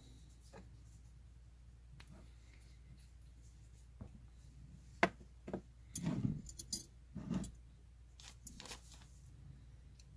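Scattered faint clicks and rustles of small tools and materials being handled on a fly-tying bench, with a sharp click about five seconds in and a short run of louder handling noises a second later.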